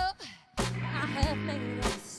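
Live band music with electric guitar, bass and drums. A drum hit opens a brief break, and the band comes back in about half a second later. A woman sings short, wavering notes over it.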